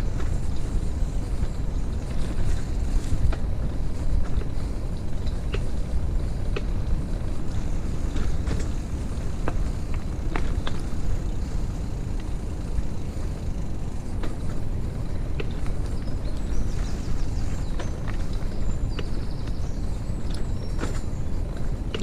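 Wheels rolling over a rough dirt towpath, a steady low rumble with scattered irregular clicks and knocks.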